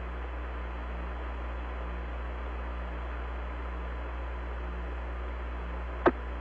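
Steady radio static hiss over a low hum: an open radio channel between spoken transmissions.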